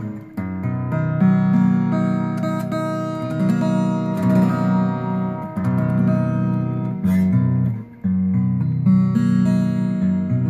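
Zager parlor-size acoustic guitar being played: chords ring out one after another with a warm, big sound, with a brief break about eight seconds in.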